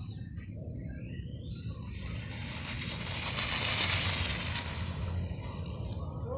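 High-speed RC car making a run: a high whine that climbs steeply in pitch, is loudest about four seconds in, and then fades away.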